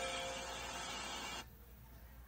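Programme sound of an animated film, music with a few held tones, playing through an iPad's speaker, cut off suddenly about one and a half seconds in when the channel is switched and the stream starts buffering.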